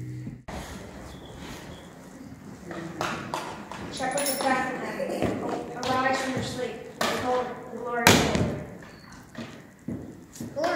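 Young children's voices making sounds without clear words, with one loud thump about eight seconds in.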